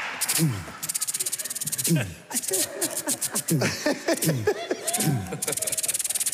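A man vocally imitating a Holy Week procession band's march: rapid trilled drum rolls and short falling sung notes.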